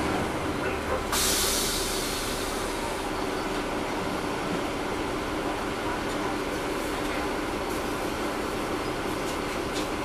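Interior of a 2009 NABI 40-SFW transit bus heard from the rear seats: its Caterpillar C13 diesel engine running with the engine cooling fans on, a steady drone and hum. About a second in, a short hiss of air rises and fades.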